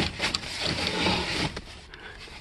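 Hands rummaging through paper and cardboard, rustling and crinkling, with a few light knocks from loose parts being moved.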